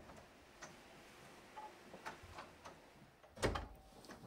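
A few faint, scattered clicks, then a door shutting with a thud about three and a half seconds in.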